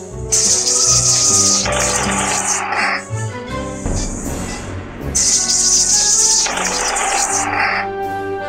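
Game music with steady pitched notes, twice overlaid by a long hissing rush lasting two to three seconds each.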